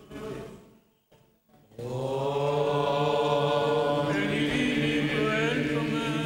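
Greek Orthodox (Byzantine) chant: male voices singing a slow melody over a steady held low note, the ison drone, beginning about two seconds in after a brief pause.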